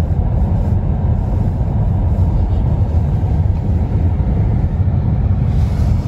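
Steady low rumble heard inside a car driving across a covered bridge's wooden plank deck: tyres running over the boards along with the car's road and engine noise.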